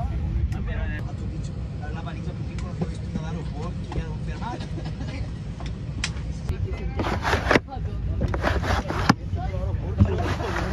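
Steady low rumble of an Airbus A319's cabin before departure, with passengers talking in the background. A few louder, brief bursts come about seven and eight and a half seconds in.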